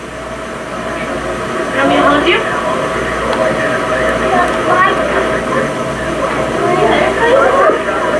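Indistinct talking from several people over a steady low rumble of airport noise.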